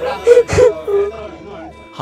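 A person's voice making two short, loud, breathy sounds in the first second, then trailing off, over background music.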